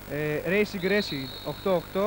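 Male commentator speaking Greek over a broadcast, with a faint steady high tone under the voice from about halfway through.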